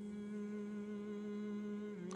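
A steady low hum holding one unchanging pitch, with faint overtones above it.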